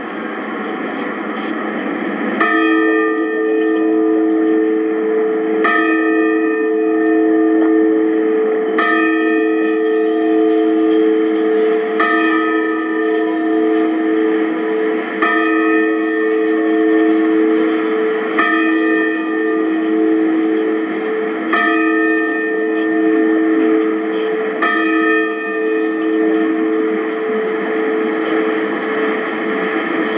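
The Sapporo Clock Tower bell strikes eight times, about three seconds apart, each stroke ringing on into the next. It is the hour strike for eight o'clock, broadcast as a radio time signal and heard over an AM receiver.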